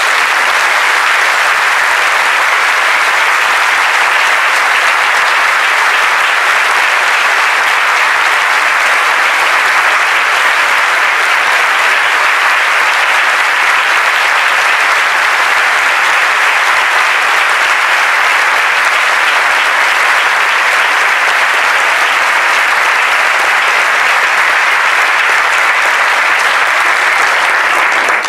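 Large audience applauding, steady and sustained throughout, stopping abruptly near the end.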